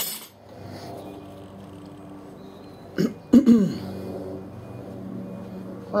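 A man coughing a few times about three seconds in, over a faint steady hum, with a sharp click at the very start.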